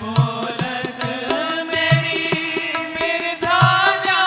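Devotional chant (bhajan) sung by a voice with musical accompaniment: sustained held tones under the melody, a low drum beat roughly once a second, and lighter percussion strokes in between.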